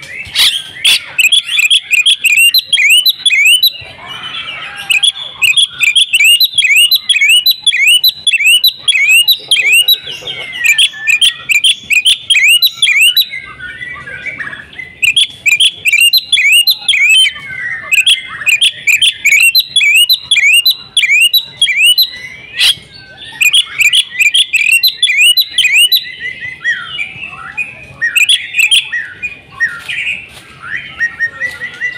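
Oriental magpie-robin singing loudly in long, fast runs of short, sharp, curving chirps, about four notes a second, with brief pauses between runs.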